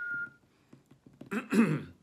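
A thin, steady whistling tone fades out about half a second in. Then a man clears his throat once, briefly, while emotional.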